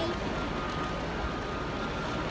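Steady background noise of a busy railway station, described as a bit noisy, with a faint steady high tone running through it.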